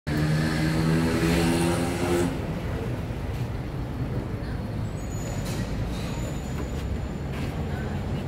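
Street traffic: a heavy vehicle's engine runs with a steady pitched drone for about the first two seconds, then it drops to a low traffic rumble with faint voices.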